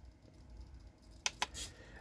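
Two quick clicks, close together, from the button of a RadioMaster MT12 transmitter being pressed, followed by a short soft hiss, against quiet room tone.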